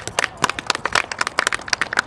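Rapid, irregular crackling: a dense run of sharp clicks, several to the second.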